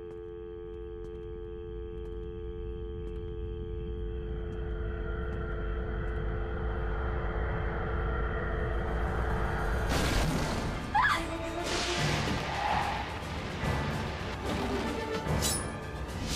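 Horror trailer score: a held, droning chord over a low rumble swells slowly for about ten seconds, then breaks into a run of loud hits and crashes with a brief rising sweep.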